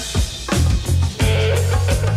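Rock band playing: drum kit strokes over a heavy bass line, with guitar. The bass drops out briefly near the start, then the full band comes back in.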